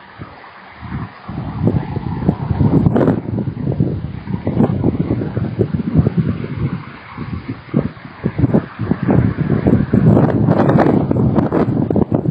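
Wind buffeting an outdoor webcam microphone, in uneven gusts that surge and drop, loudest in the second half.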